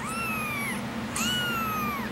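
A kitten under two weeks old meowing twice, each a high, thin call of under a second that falls slightly in pitch.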